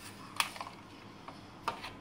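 A metal spoon stirring half-frozen ice cream base in a plastic container, giving a few light clicks against the container.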